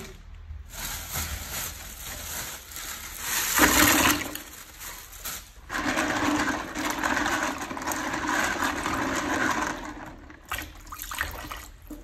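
Clams being washed by hand in a plastic basin of water: water sloshing and splashing, with a louder splash about four seconds in and a steadier stretch of swishing after it.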